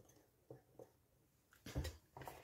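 Faint, brief taps and handling noise of wooden pencils being set down on a table amid near quiet, with a slightly louder knock near the end.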